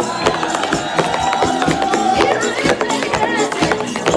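Tap shoes clicking in rapid strings of taps on a stage floor, over loud dance music.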